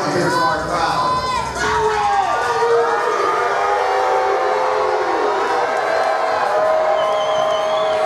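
Spectators shouting and cheering, many voices overlapping, with some long drawn-out calls.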